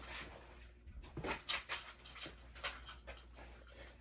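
Faint rustling with a scatter of light clicks and knocks: clothes and items being handled and pulled from a pile.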